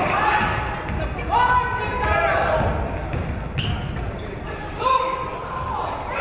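Basketball dribbled on a hardwood gym floor, with sneakers squeaking and players' voices calling out in the large gym.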